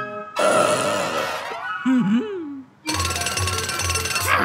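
Cartoon soundtrack: a loud noisy sound effect, then a short vocal sound from a cartoon character that bends up and down in pitch, then, about three seconds in, background music with a steady beat.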